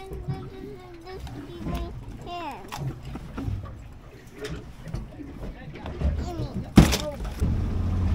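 Scattered voices and laughter over light handling noise, one sharp loud thump about seven seconds in, then the steady low rumble of a boat running with wind and water noise.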